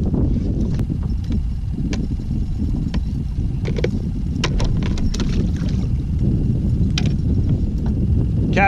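Steady low wind rumble on the microphone, with scattered light clicks and taps from fishing tackle and a just-landed catfish being handled on a kayak.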